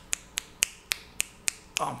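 A man snapping his fingers over and over, about six snaps at roughly three a second, as he tries to recall a name.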